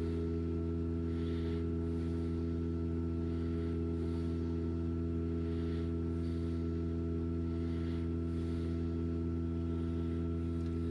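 Fisher & Paykel DishDrawer dishwasher's drain pump running with a steady hum, pumping the water out on the second drain cycle that follows a cancelled wash. A faint swishing recurs about every two-thirds of a second.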